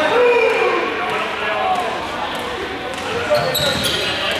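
Several young people's voices calling and talking over each other in a large, echoing sports hall, with a ball bouncing on the hard court floor a few times; the sharpest knock comes near the end.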